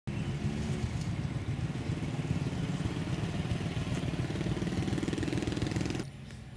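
A motorcycle's small engine running steadily at low speed, a rapid low throb.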